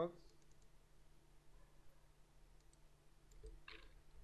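Faint computer mouse clicks: a few light ticks and a slightly louder click near the end, opening a form field's properties dialog, over near-silent room tone.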